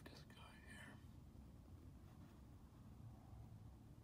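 Near silence: low room hum, with faint whispering in the first second.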